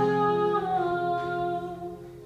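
A woman singing one long held note over a strummed acoustic guitar; the note dips slightly in pitch partway through and fades near the end.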